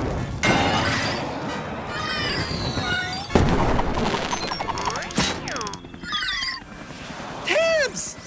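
Cartoon firework sound effects: a fizzing build-up, then a loud bang about three seconds in as the firework bursts, followed by crackling and sliding whistle tones, over background music.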